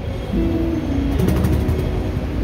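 Steady low city-street rumble, with a few short soft guitar notes and faint ticks.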